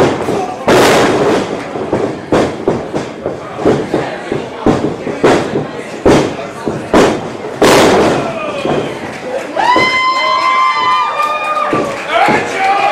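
Bodies and strikes hitting a wrestling ring: a string of sharp thuds and slams on the canvas over crowd noise in a hall. Near the end a voice lets out a long, high yell.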